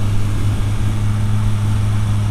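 Suzuki GSX-S750's inline-four engine running at a steady cruise, a constant low hum that holds one pitch, with wind rushing over the microphone.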